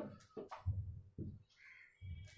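Marker squeaking on a whiteboard as a line is written, in several short strokes.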